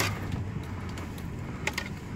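Truck driving on a rough dirt road, heard from inside the cab: a steady low engine and tyre rumble with a few light rattles and clicks, two of them close together near the end.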